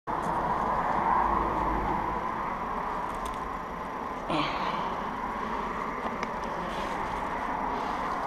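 Steady hum of road traffic, with low wind rumble on the microphone in the first two seconds and a short sound about four seconds in.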